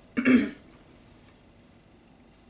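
A woman's single short vocal sound, a brief burst just after the start, followed by quiet room tone.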